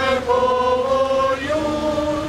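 A group of people singing a slow song together, holding long notes, with the tune moving to a new note about one and a half seconds in.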